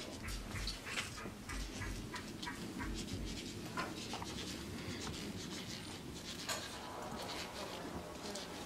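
Faint shop ambience: a low steady background with scattered light clicks and rustles, the kind made by clothes hangers and a stroller moving between racks.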